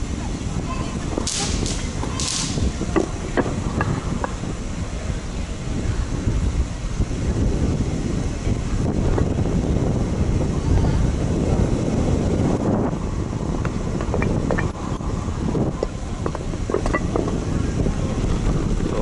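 Wind buffeting the microphone of a camera on a moving bicycle, with tyre rumble and small rattles and clicks as the bike rolls over paving slabs and cobbles.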